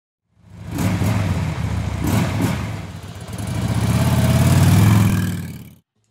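Motorcycle engine revving. It fades in, gives a couple of quick blips about two seconds in, then climbs in one long rev and stops abruptly near the end.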